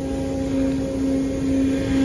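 Steady hum of running rooftop machinery: one droning tone with fainter higher tones over a low rumble, swelling and pulsing a little in the second half.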